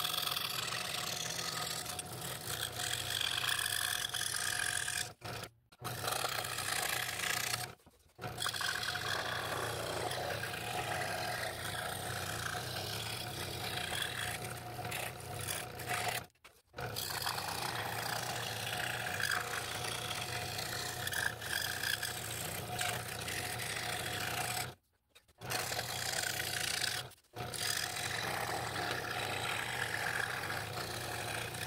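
Electric scroll saw running steadily, its fine blade cutting thin wood with a continuous buzzing rasp. The sound cuts out briefly about five times.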